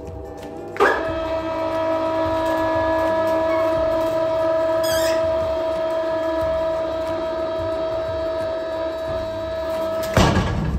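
Electric chain hoist motor starting with a clunk about a second in, then running with a steady whine as it works the log clamp over the sawmill bed.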